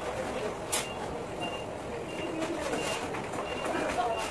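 Background chatter of a busy public space, with a short high electronic beep repeating about every three-quarters of a second from about a second and a half in, and a single sharp crackle shortly before that.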